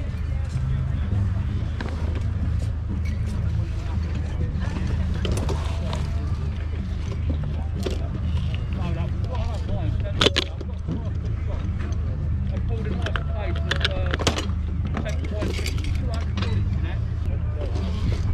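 Open-air market ambience: a steady low rumble of wind on the microphone with background chatter from people at the stalls, and a sharp metallic click about ten seconds in as a brass lock mechanism is handled.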